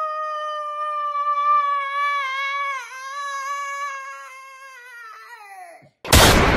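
A woman singing one long, high held note, wavering slightly and dipping briefly about halfway through. It grows fainter in the second half and slides down in pitch just before it stops.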